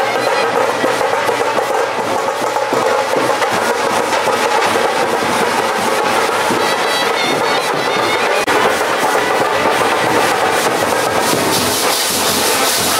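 Indian procession brass band playing: horns and reed-like wind instruments over continuous drumming.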